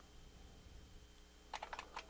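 Faint computer keyboard typing: a near-quiet stretch, then a quick run of several keystrokes near the end.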